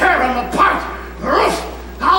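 A dog barking, mixed with excited human voices.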